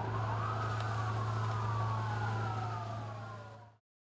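Police siren wailing in one slow cycle: a quick rise, then a long falling glide, over a steady low hum. The sound fades and stops just before the end.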